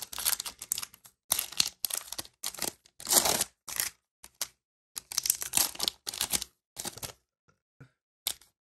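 Foil wrapper of a Panini Chronicles football card pack being torn open and crinkled by hand: a string of short crackling tears and rustles that thin out about seven seconds in.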